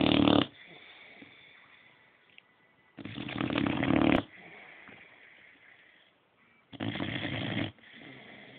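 Boxer dog snoring in its sleep: loud snores about a second long, one ending just after the start, then one at about three seconds and one near seven seconds, with quieter breathing between.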